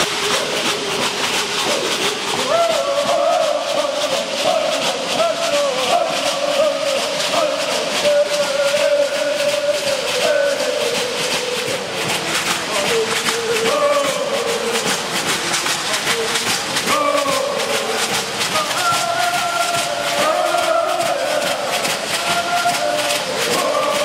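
Muscogee (Creek) stomp dance: voices chanting a song together over the fast, steady shaking of the women's turtle-shell leg rattles.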